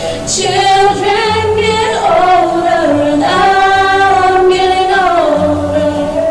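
Two women singing a duet in harmony into microphones, the two voices moving together in long held notes.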